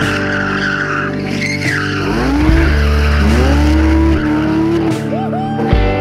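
BMW 320i E30's straight-six engine revving hard through a drift, its pitch rising twice and held high in the middle, with the tyres squealing near the start. Rock music with guitar plays underneath.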